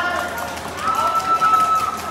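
Shouting voices in a large hall during a badminton rally, one high call held for about a second, with faint ticks of play underneath.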